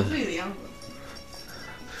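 A man's drawn-out exclamation, rising and falling in pitch, trails off about half a second in. Quiet background music follows.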